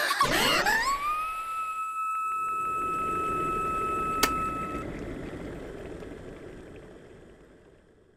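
Electric kettle coming to the boil, as an animated sound effect: a whistle rises in pitch and is then held steady over the low rumble of boiling water. About four seconds in, a sharp click sounds as the kettle switches off, the whistle stops soon after, and the boiling dies away.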